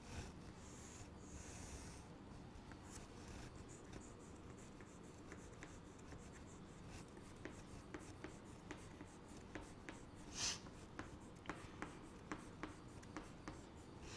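White chalk on a chalkboard: faint scratching as straight lines are drawn, then a run of short, light chalk strokes and taps as small triangles are drawn one after another, with one louder scrape about ten seconds in.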